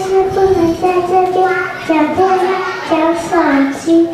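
Young children's voices singing a slow melody, holding each note before stepping to the next.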